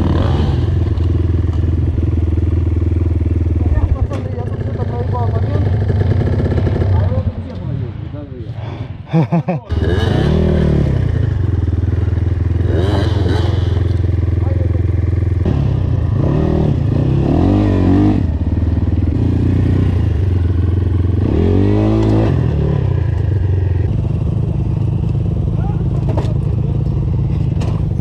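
Enduro motorcycle engines running in a rocky gully: a steady idle close by while another dirt bike's revs rise and fall several times as it climbs over stones. The engine sound drops away for a couple of seconds around eight seconds in, then comes back abruptly.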